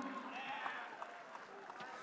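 Faint murmur of background voices over low room noise, with a few small ticks.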